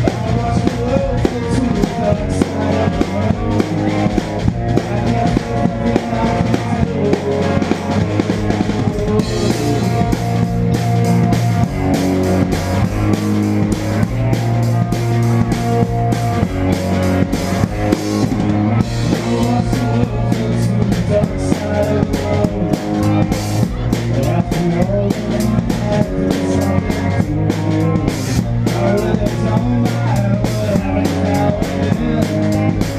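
Live rock band, electric guitars and drum kit, playing a song, with the drums up front and a steady kick and snare beat. Cymbals come in more heavily about nine seconds in.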